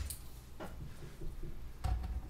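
Quiet room tone with a low hum and a few faint clicks of things being handled on the bench; the most distinct click comes near the end.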